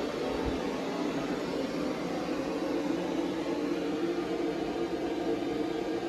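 A steady whirring hum that holds unchanged throughout.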